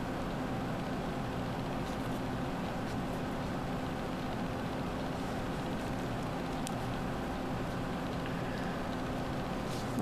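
Steady background hum and hiss with no speech, holding at one level throughout, with a couple of faint ticks.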